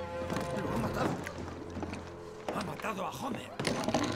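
Film soundtrack with background music under voices that say no clear words, and a couple of short knocks about two and a half and three and a half seconds in.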